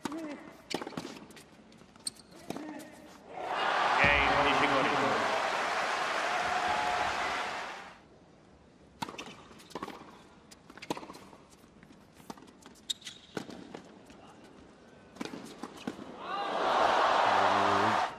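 Tennis ball struck by rackets in a rally, sharp pops a second or so apart. Then a crowd applauds and cheers for about four seconds. More racket strikes follow, and the crowd applauds again near the end.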